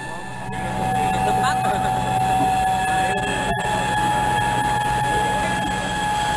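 A steady mechanical hum with street noise and faint distant voices.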